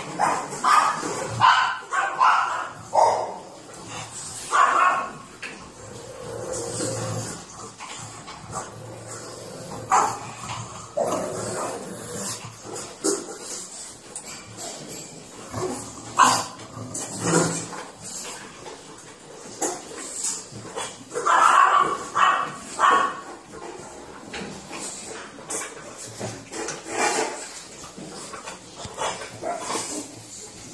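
Pugs barking and whining in short clusters with pauses between them, in a small tiled room, while waiting by their food bowls.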